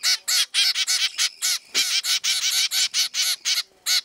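Zebra finch chicks giving rapid, high begging calls, about five a second with a short break near the end, while being hand-fed: the calls of hungry nestlings asking for food.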